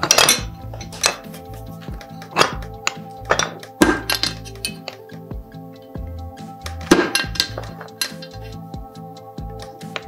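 Several sharp, irregularly spaced cracks and clinks of marble strips being split into small tiles on a manual mosaic cutting press, with chips clinking on the metal plate. Music plays throughout.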